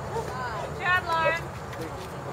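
High-pitched voices of girls calling out from the softball field, two short shouts, the first about a quarter-second in and the second about a second in. A steady low hum runs beneath them.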